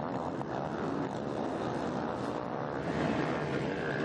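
Motocross bikes racing, their engines revving and running together in a steady mix of engine noise.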